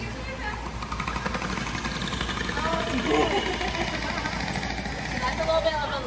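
Voices talking over a steady mechanical noise, with a short high whistle about two-thirds of the way through.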